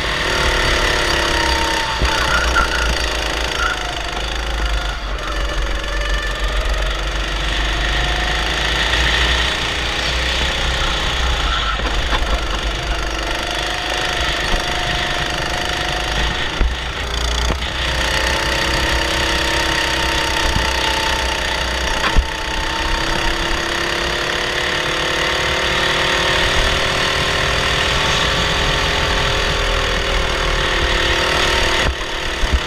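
Honda 270cc single-cylinder four-stroke kart engine running hard on track, its pitch falling and rising repeatedly as the kart slows for corners and accelerates out of them, with a steady low rush of wind over the microphone.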